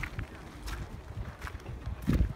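Wind rumbling on a phone microphone outdoors, with a few faint footsteps at walking pace.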